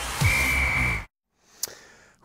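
A short music sting for a transition: a swelling whoosh with a held high tone over a low falling sweep, lasting about a second and cutting off sharply. A faint click follows shortly after.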